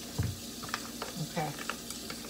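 A soft thump, then a few light clicks of items being handled on a kitchen counter, over a steady background hiss.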